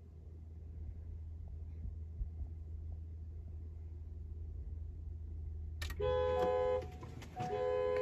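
Low steady hum while the push-button start is held, then about six seconds in an electronic beep, a steady tone held just under a second, followed by another as the car's ignition switches on.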